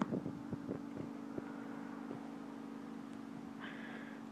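A steady, faint machine hum holding a few level tones, with several light taps in the first second and a half as a thrown ball bounces on concrete.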